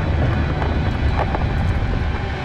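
Loud, deep rumble of a rockslide, rock and debris pouring down a cliff face.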